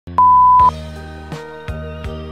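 A loud, steady electronic beep lasting about half a second, then music begins with held low chords and a few soft percussive hits.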